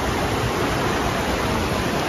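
River water pouring over a low rock ledge into churning white-water rapids: a steady, loud rush.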